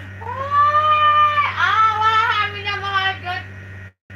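A high-pitched, drawn-out vocal sound: one long held note about a second and a half long, then several shorter wavering notes that bend up and down.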